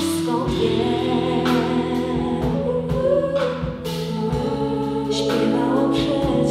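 Live pop band performing: a female lead vocal with backing singers in harmony, over bass guitar, keyboard and drums, with regular drum and cymbal hits.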